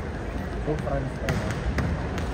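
Volleyballs being bounced and struck during warm-up: a few sharp thuds in the second half, over a steady murmur of crowd chatter in a large arena.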